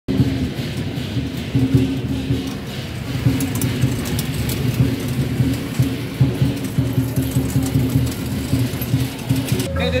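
Beiguan procession music in the street: held pitched notes with short breaks between them and scattered percussive clashes, mixed with crowd talk. The music cuts off abruptly just before the end.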